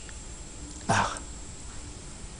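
A single brief vocal sound from a man about a second in, a short grunt-like syllable, over a low steady room hum.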